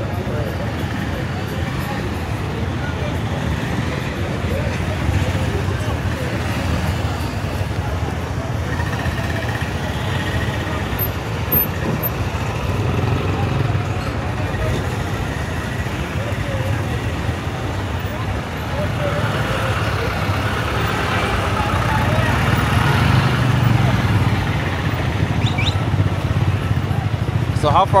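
Busy street traffic: minibus and motorcycle engines running and passing close by, a steady low rumble with the indistinct voices of people around. It grows louder about two-thirds of the way through.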